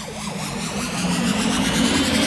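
Synthesized riser sound effect: a noise swell with tones gliding steadily upward, growing louder as it builds.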